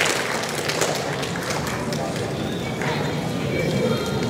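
Audience applause thinning out to scattered claps over a murmur of voices in the crowd.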